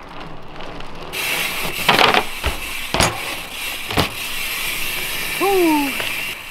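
Dirt jump bike's freewheel hub ticking rapidly as the bike coasts, with a few sharp knocks about a second apart from the bike hitting the ramp and tarmac. A short falling shout near the end.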